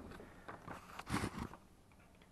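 Handling noise of a small camera being moved and set down on a textured platform surface: a few light scrapes and clicks in the first second, then a couple of spoken words.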